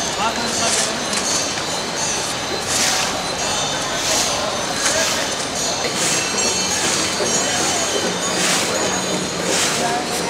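River water running past the stone ghat steps, a steady hiss, with people's voices underneath and a bright hissing stroke about once a second.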